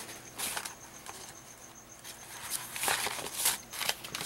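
Sheets of paper rustling and sliding against each other as they are lifted and laid down by hand, in soft irregular bursts that get louder and busier in the second half.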